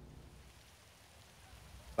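Faint, steady background hiss of ambient noise with no distinct events.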